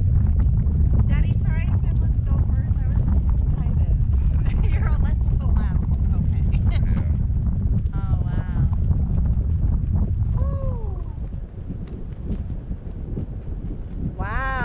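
Wind buffeting the microphone of a camera carried aloft on a parasail: a loud, steady low rumble that eases about eleven seconds in, with short snatches of voices over it.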